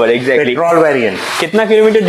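A man talking, with a short rubbing noise about a second and a half in.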